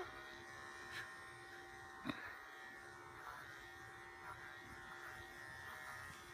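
Electric dog clippers running with a steady hum while trimming a dog's fur around its head, with two brief clicks about one and two seconds in.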